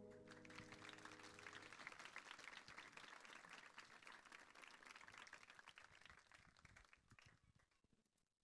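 Faint audience applause as the band's last held notes die away, thinning out and stopping about seven seconds in.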